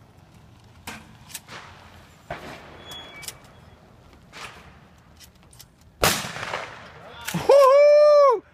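A few faint clicks and knocks, then a single shotgun shot about six seconds in, its report fading over about half a second. A man's shout starts near the end.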